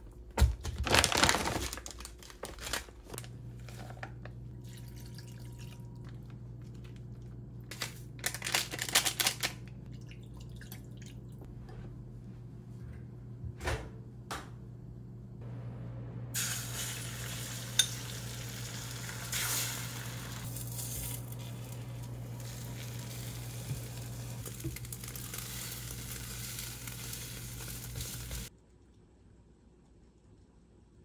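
Cooking at an electric hob: handling clatter and a few knocks and clinks, over a steady low hum from the cooktop. From about halfway through, beaten egg fries in the pan with a steady sizzle, which cuts off suddenly near the end.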